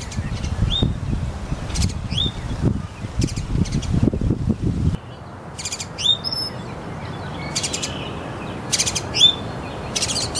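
Small birds chirping in short, high, rising chirps about once a second, over a low noise that cuts off about halfway through.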